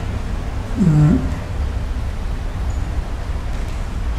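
An old man's voice close to a microphone: one short drawn-out syllable about a second in, its pitch dipping and then rising again, over a steady low hum.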